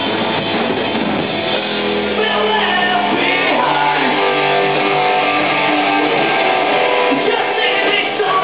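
Punk rock band playing live: electric guitar, bass guitar and drum kit, with the lead singer singing hard into the microphone.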